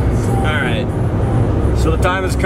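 Steady low rumble of a car's engine and road noise heard from inside the cabin while driving, with a short vocal sound about half a second in.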